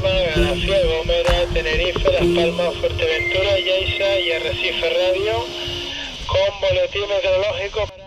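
A voice coming over a marine VHF radio's loudspeaker, thin and band-limited, with background music under it.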